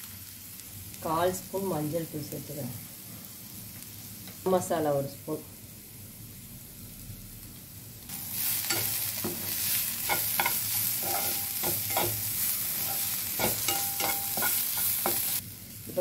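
Chopped onion and tomato frying in a nonstick pan, stirred with a steel slotted spoon that scrapes and clicks against the pan. The first half is quieter; from about halfway a steady sizzle runs with many spoon clicks.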